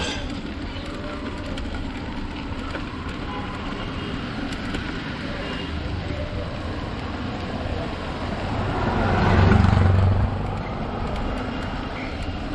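Street traffic and road noise heard from a moving bicycle: a steady low rumble throughout. A louder rumble swells up and fades away about nine to ten seconds in, like a vehicle going by.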